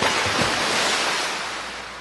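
A sudden rush of noise that starts at once, holds for about a second, then fades away steadily.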